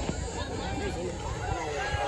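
Indistinct voices of people talking and calling out at a distance, over steady outdoor background noise.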